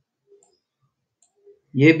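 A few faint computer-mouse clicks in near silence, then a man's voice starts near the end.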